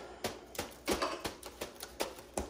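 Irregular crackling and rustling of tape and plastic sheeting being handled and pressed down on a table, a quick run of small clicks with no steady rhythm.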